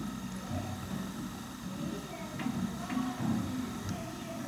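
Low, indistinct voice murmuring, with a couple of faint small clicks about halfway through.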